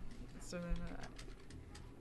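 Speech only: a woman's single soft "yeah" about half a second in, then quiet room tone from the studio.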